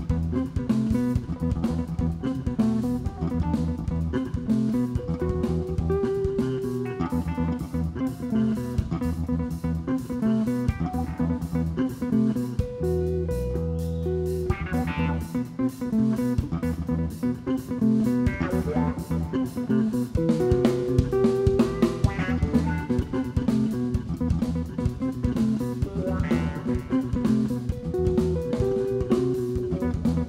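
A live band playing an instrumental jam: guitar lines over bass and a steady drum-kit beat, which thins out briefly about halfway through before picking back up.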